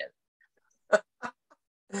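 A few short bursts of laughter about a second in, after a brief near-silent pause.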